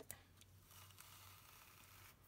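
Near silence, with faint rustling from a card treat box and ribbon being handled, and a few faint ticks near the start.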